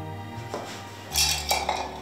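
A metal drinking mug clinking and knocking several times, the loudest clatter just after a second in, over soft background music.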